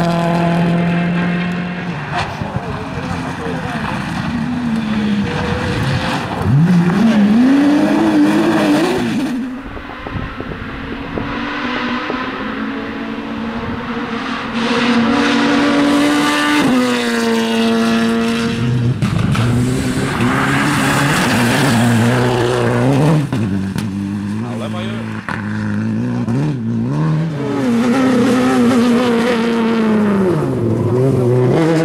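Rally cars driven hard one after another on a gravel stage: a Ford Focus WRC and then a Volkswagen Polo. Their engines rev up in rising notes that drop back at each gear change, over the noise of tyres on loose gravel.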